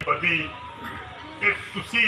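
A man speaking at the start and again near the end, with a pause in between in which a single thin steady tone is heard for about a second.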